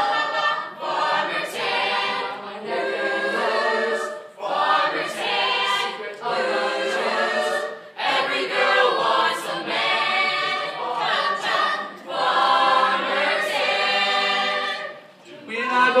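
A group of young singers singing together a cappella, in phrases of a few seconds with short breaks between them.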